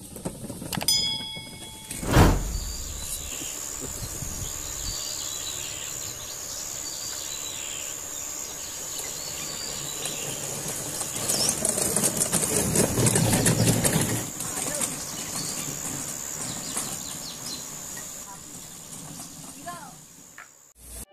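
A short chime and a sharp click from a subscribe-button animation in the first two seconds. Then outdoor jungle ambience: a steady high insect drone with scattered bird chirps, and a louder stretch of rustling about twelve seconds in.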